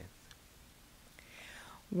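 Quiet room tone in a pause between speakers, with a faint breathy, whisper-like sound about a second and a half in.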